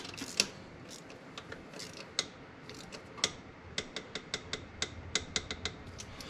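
Hand ratchet wrench clicking as bolts on the supercharger are run down: scattered clicks at first, then a quicker, even run of clicks in the second half.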